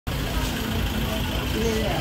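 Indistinct voices of people close by over a steady low rumble.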